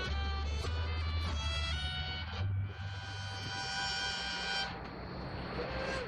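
Fiddle with upright bass and acoustic guitar backing playing the last phrase of a tune. It ends on one long held note that stops about five seconds in.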